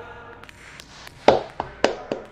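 A basketball dribbled on a hardwood gym floor: sharp bounces about half a second apart, starting a little over a second in, the first the loudest.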